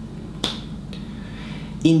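A single sharp click about half a second in as a round planet magnet is put onto a whiteboard, over a faint steady low hum; a man starts speaking near the end.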